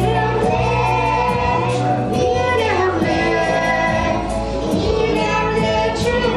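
Young girls and a woman singing a song together over instrumental accompaniment.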